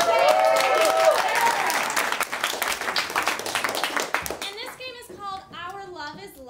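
Audience applauding, with cheering voices in the first second or so; the clapping dies away after about four seconds.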